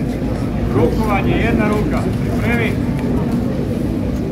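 Indistinct chatter from a crowd of onlookers, with a few voices rising briefly, over a steady low rumble.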